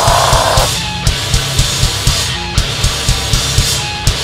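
Hardcore/metalcore band playing live at full volume: heavily distorted guitar and bass over pounding drums. A harsh screamed vocal carries through the first second or so, then drops out and the instruments play on.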